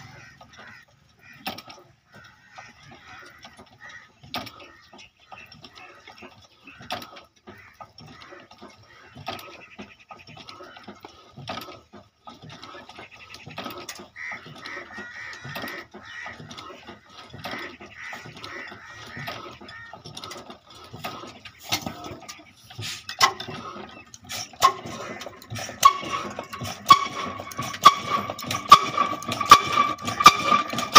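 Scattered metal clicks and knocks as an old flywheel diesel engine is handled and readied for starting. About 25 seconds in it gets much louder: a steady whine with regular knocks about once a second.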